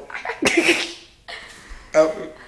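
A person's sudden explosive burst of breath through the mouth and nose about half a second in, lasting about half a second, with short voice sounds around it.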